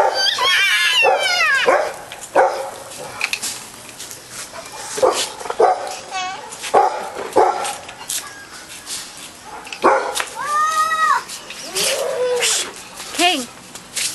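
A dog barking and yelping in short separate calls, opening with a whine that falls in pitch over the first two seconds.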